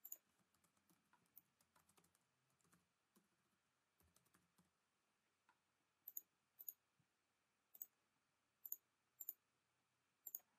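Faint computer keyboard typing and mouse clicks: a run of light key taps over the first half, then about five sharper, separate clicks.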